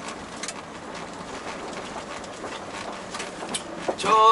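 Steady engine and road noise heard inside the cab of a Tata Daewoo Prima 5-ton truck on the move, with a couple of faint clicks.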